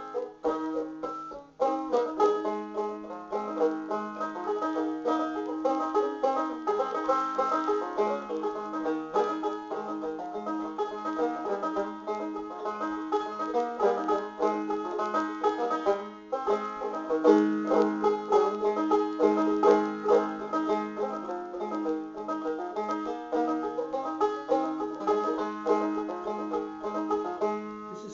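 Epiphone MB-200 five-string banjo with an aluminium pot, played solo in a frailing pattern mixed with picking: an old-time marching tune over a steady drone. The playing breaks off briefly twice, about a second and a half in and again around sixteen seconds in.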